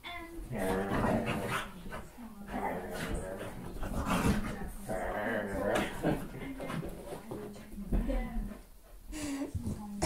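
A pet dog making repeated growls and whines in play while a person roughhouses with it.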